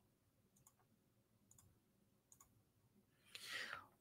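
Near silence with a few faint, spaced computer clicks as the presentation slide is advanced, then a short breath in near the end.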